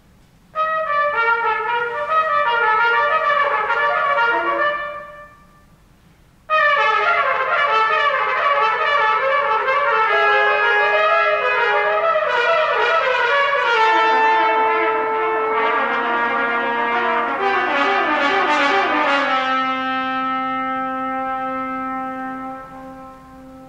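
Three trumpets playing contemporary chamber music. About half a second in, a burst of rapid overlapping figures starts and dies away, followed by a short pause. The trumpets then break into dense fast passages; from about fourteen seconds, held notes stack up beneath the running figures, ending on a sustained chord that fades at the very end.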